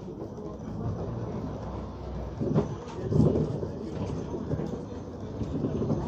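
Cabin sound of a 2017 Hyundai New Super Aerocity high-floor city bus moving off: low engine drone and body rattle, with a couple of louder knocks about two and a half and three seconds in.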